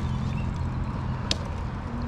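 Low, steady rumble of an electric bike being ridden over grass, mostly wind on the handlebar microphone and tyre noise, with one sharp click about a second and a quarter in.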